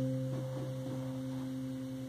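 The last chord on an acoustic guitar ringing out after the final strum, its notes held and slowly dying away.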